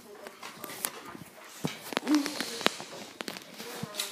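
Several sharp knocks and clicks, with a short dog whimper about two seconds in.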